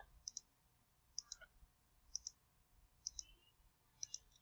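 A computer mouse button clicked four times, about once a second. Each click is faint and has a quick double tick of press and release.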